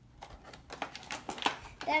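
Irregular quick clicks and crinkles from the plastic tray inside a cardboard Hot Wheels five-pack box as a die-cast toy car is pulled out of it.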